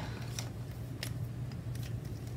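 A few light, sharp clicks and taps of desk handling as stickers and a pen are handled over a paper wall calendar, over a steady low hum.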